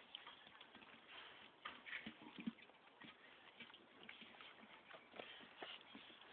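Faint, scattered tapping and scuffling of puppies moving about, with a couple of brief low sounds around two seconds in.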